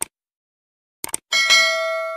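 Subscribe-button animation sound effect: a short click, then two quick clicks about a second in, followed by a bright bell chime that rings on and fades slowly.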